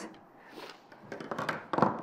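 Scissors and other sewing tools being handled and laid down on a cutting mat on a wooden table: light knocks, clicks and rustling, loudest near the end.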